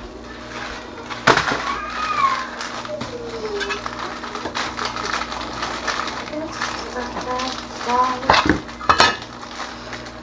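A wooden soap cutter with a metal blade clinks and knocks as a loaf of soap is set in and cut. There is one sharp knock a little over a second in and a cluster of knocks near the end.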